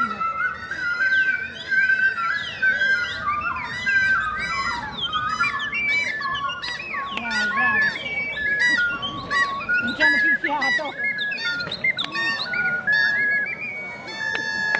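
Ocarinas playing together: several high held notes at once, broken by many quick sliding, chirping swoops of pitch that sound like birdsong.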